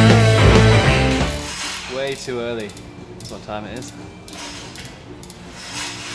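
Rock music that cuts out about a second in, followed by quiet pit-tent work on a downhill mountain bike: scattered light clicks and knocks of hand tools, with a couple of brief wordless vocal sounds.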